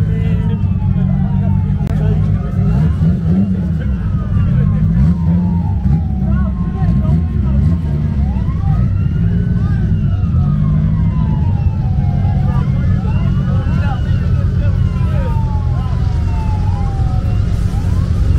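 Several sirens wailing at once, their pitches sweeping slowly up and down and overlapping, over a heavy, continuous low rumble and crowd chatter.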